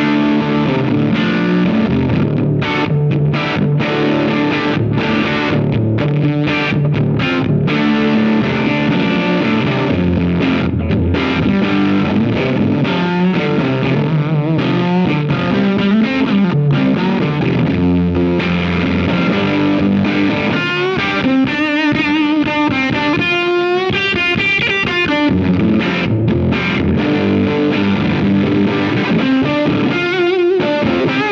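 Gibson Les Paul electric guitar played through a Greer Soma 63, a Fender Brownface-style transformer preamp/overdrive pedal, with its gain cranked up, giving a distorted tone. A continuous passage of chords and lead lines, with wide vibrato on high notes about two-thirds of the way through.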